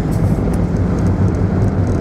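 Car engine and tyre noise heard from inside the cabin while driving, a steady low drone.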